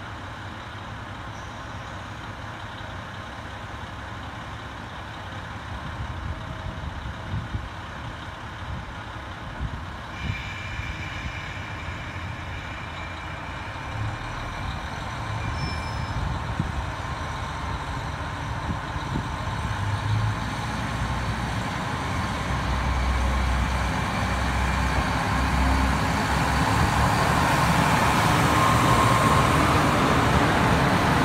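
Diesel railcar engine throttling up as the train pulls away from the platform, its low rumble growing steadily louder over the second half.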